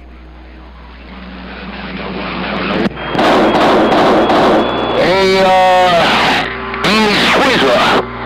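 CB radio receiver on AM: static hiss swelling after one station unkeys, then another station keys up about three seconds in with a louder rush of static and a faint steady whistle. Toward the end, a few distorted, garbled voice sounds come through the noise.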